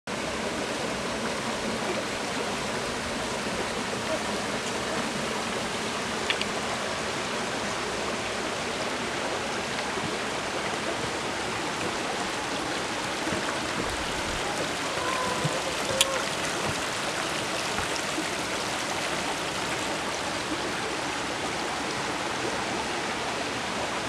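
Water of a rocky stream spilling over a small waterfall into a pool: a steady rushing, with a sharp click about two-thirds of the way through.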